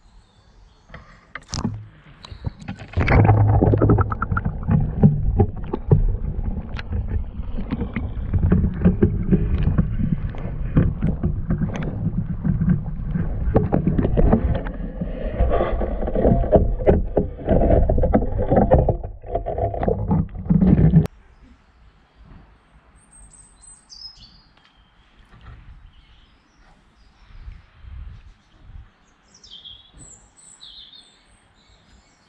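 Water splashing and sloshing right at a partly submerged microphone as a beaver moves in the shallow water beside the camera, loud and continuous, then stopping abruptly about two-thirds of the way through. Afterwards, faint bird chirps.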